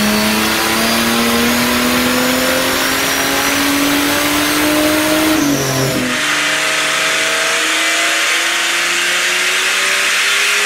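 Supercharged Ford six-cylinder engine pulling under load on a chassis dyno, its pitch climbing steadily as the revs rise. About six seconds in, the note breaks off and gives way to a lighter engine sound that again rises slowly in pitch.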